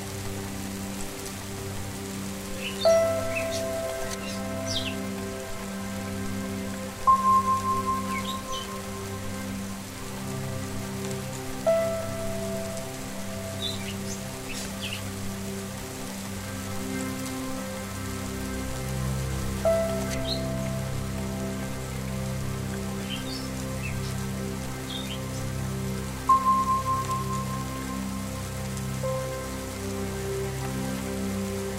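Ambient meditation music: sustained low drone tones over a steady patter of rain, with short bird chirps scattered throughout. A bell is struck about five times, every four to eight seconds, each stroke ringing on and fading, and these are the loudest sounds.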